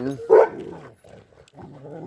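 A dog barks once, short and loud, about a third of a second in, during rough play among several dogs, followed by quieter dog noises.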